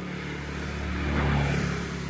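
A motor vehicle's engine running as it passes close by, its low hum growing louder for about the first second and a half and then easing slightly.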